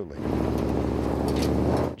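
The souped-up 1976 Dodge Club Cab pickup's 417-horsepower engine running loud and steady, starting about a quarter second in and cutting off suddenly near the end.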